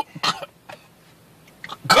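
A man coughing: one short cough about a quarter second in, then a loud, hoarse cough near the end.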